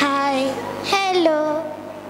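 A girl's voice singing two drawn-out notes, the second dropping in pitch partway through.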